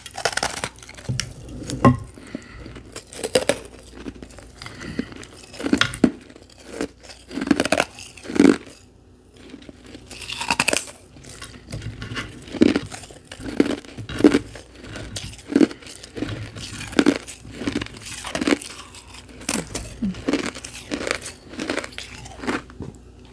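A block of refrozen carbonated ice being bitten into and chewed close to the microphone: a string of crisp crunches, about one a second, with a strong bite at the start and another around ten seconds in.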